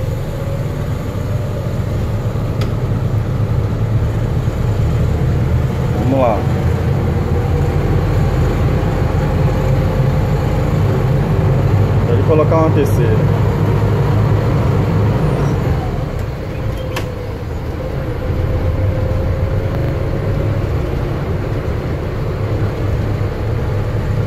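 Bus engine running steadily under way as the bus drives straight along a street, a low drone with a steady whine over it; the engine note drops briefly about two-thirds of the way through.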